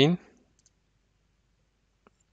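A single faint computer mouse click about two-thirds of a second in, as a menu item is chosen to restart the virtual machine, after the last syllable of a spoken word.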